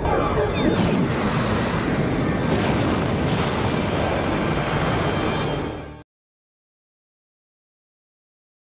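TV sci-fi soundtrack of a starship explosion: a long, dense explosion rumble mixed with music, which fades briefly and then cuts off abruptly about six seconds in, leaving dead silence.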